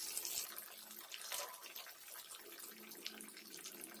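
Battered boneless fish pieces frying in hot oil in a pan: a steady sizzle with scattered small crackles, a little louder in the first second.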